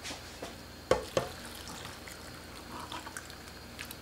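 Cooked potato slices and broth poured from a pot into a stainless steel container of salted yeolmu greens: soft wet splashes and drips, with two sharp taps about a second in.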